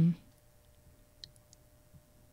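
Near silence: quiet studio room tone, with one faint click about a second in.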